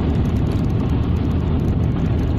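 Steady low rumble of a car on the move, road and engine noise heard from inside the cabin.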